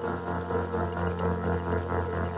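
Electronic ambient drone music: a deep, steady bass drone with several sustained tones layered above it, pulsing gently in loudness.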